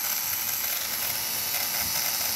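Small fischertechnik DC motor running clockwise under power from the ROBO Interface's motor output: a steady, high-pitched running noise. It shows that the motor and the interface output both work.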